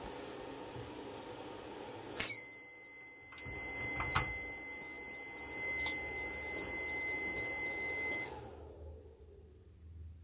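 The UKC 4000 W 12 V-to-240 V power inverter sounds its fault alarm under the welder's load. A click about two seconds in is followed by a steady high-pitched beep held for about six seconds, with a louder rushing noise underneath. Both cut off together near the end.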